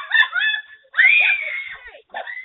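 A person screaming in fright: a few short shrieks, then one long, high scream about a second in.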